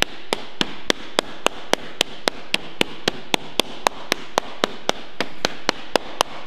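Flat hardwood slapper striking a sheet of low-carbon steel backed by a lead-shot bag: a steady rhythm of sharp slaps, about three and a half a second, worked in an overlapping pattern to start raising shape in the flat panel.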